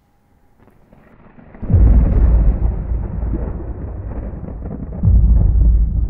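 Deep boom sound effect of a logo end card: a low rumble swells, then a loud deep boom comes about two seconds in and rumbles on, and a second boom hits about five seconds in.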